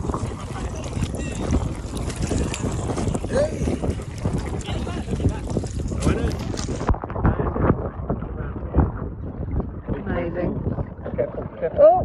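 Wind buffeting a phone microphone, with sea water sloshing around people wading waist-deep.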